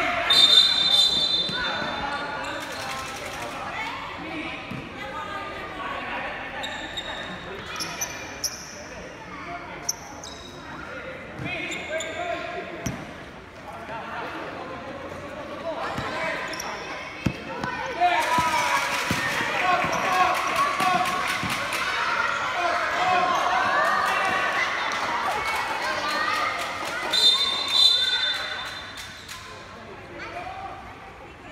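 Basketball dribbled and bouncing on a hard court in a large covered hall, with scattered knocks of the ball and footsteps. Players and spectators shout and talk over it, most densely about two thirds of the way through.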